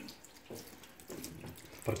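Tap water running and splashing into a sink, an uneven hiss with small irregular clicks.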